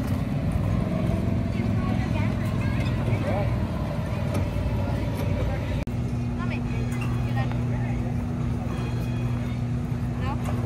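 A steady low mechanical hum from machinery, which becomes a steadier, single-pitched hum about six seconds in, under scattered voices of children and adults.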